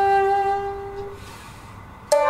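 Shakuhachi holding one long, steady note that fades out a little over a second in, followed by a quiet pause.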